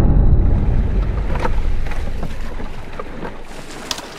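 Water lapping around a small wooden fishing boat on a lake, with a few small splashes, under a low rumble that fades away over the first couple of seconds.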